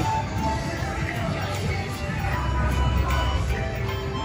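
Music playing steadily, with a low rumble underneath.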